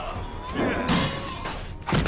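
A crash with something shattering about a second in, during a fistfight, followed by a hard hit near the end, over trailer music.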